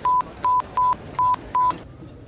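Five short censor bleeps, one steady single-pitched tone repeated about two or three times a second, each masking a repeatedly chanted swear word, the c-word.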